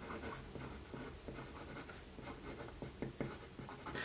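Marker pen writing on paper: faint, irregular scratching of quick pen strokes.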